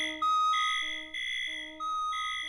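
Early electronic music: several steady, pure electronic tones at different pitches layered over one another, each entering and cutting off every half second or so.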